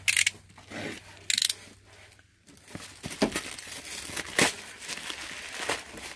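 Plastic poly mailer being torn open, two sharp tearing rips near the start, followed by quieter crinkling and rustling of the plastic wrapping.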